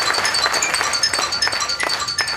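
Xylophone played with two mallets in a quick run of struck, ringing notes, in a live music performance.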